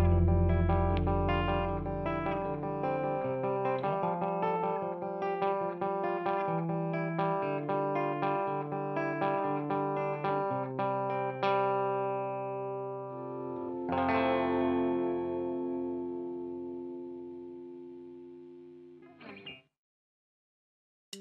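Electric guitar picking a quick run of single notes at about four a second while a low rumble dies away in the first couple of seconds. Two chords follow, the second about two-thirds of the way in, and are left to ring and fade out before the end.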